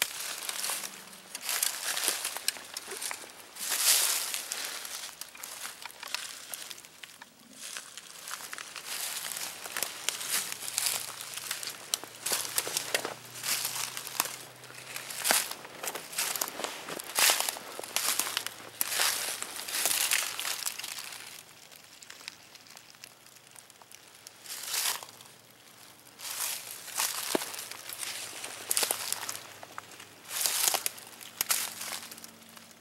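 Footsteps crunching through dry fallen leaves, uneven and irregular, with a quieter lull about two-thirds of the way through.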